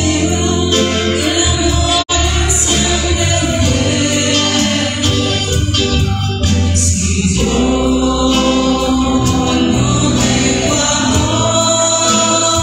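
A religious hymn: singing with instrumental accompaniment and strong bass notes. The sound drops out for a split second about two seconds in.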